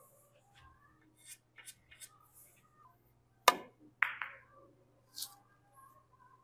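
A four-ball carom shot: the cue tip strikes the cue ball with one sharp click, then the ball clacks into the object balls twice, ringing, about half a second later.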